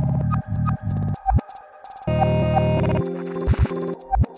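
Dark lo-fi glitch beat played live on Roland SP-404 samplers and a synthesizer: a low bass chord chopped into stuttering blocks that cut in and out abruptly, with sharp clicks between. The loudest block comes about halfway through.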